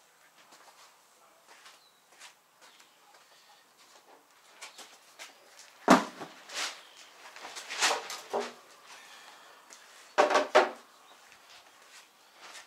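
An empty plastic meat crate being handled and set down on a platform scale. There is a sharp knock about six seconds in, then a few more clatters and scrapes.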